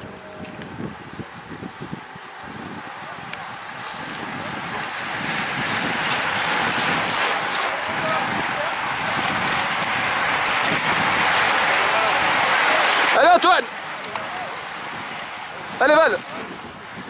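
A bunch of racing bicycles passing close by: a rush of tyre and drivetrain noise that builds over several seconds, then drops away. A spectator gives a short shout near the end, and another as more riders follow.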